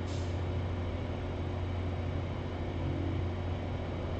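Steady low hum with faint hiss: the background noise of a small room picked up by the microphone, with nobody speaking.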